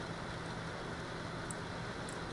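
Steady background hiss with a low electrical hum, and one faint click about one and a half seconds in.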